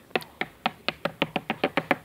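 A toy pony figure tapped rapidly against book spines: about fifteen light taps that speed up.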